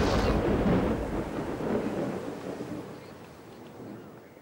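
A rumbling, thunder-like noise with a rain-like hiss, fading away over a few seconds with a couple of low swells, right after the music cuts off.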